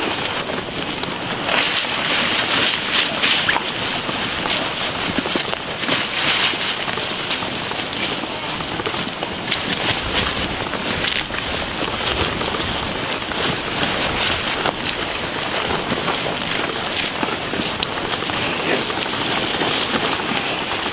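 Steady rustling, scraping and crackling of a casualty drag litter being pulled through tall grass and brush by several people on foot, with their gear jostling.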